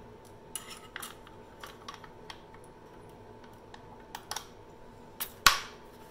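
Small plastic and metal clicks and knocks from a Ryobi 18V cordless reciprocating saw being handled while a blade is fitted into its clamp, ending in one loud, sharp click about five and a half seconds in as the blade locks in.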